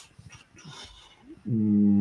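A man's drawn-out hesitation hum, a single 'mmm' held at one steady low pitch for just over a second, starting about one and a half seconds in.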